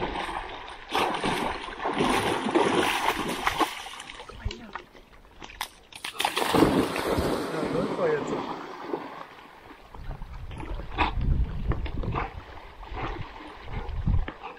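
A dog swimming and splashing through shallow lake water while fetching a stick, in two bouts of splashing, the louder one about six seconds in.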